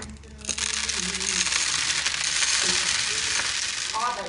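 Food frying in hot oil in a pan: a steady, loud sizzling hiss with fine crackle that starts about half a second in.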